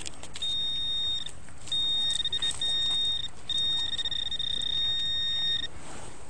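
Handheld Garrett pinpointer probe sounding a steady high-pitched tone in four stretches, the last and longest about two seconds, as its tip is worked through the loose dirt of a dug hole. The tone signals metal right at the probe's tip.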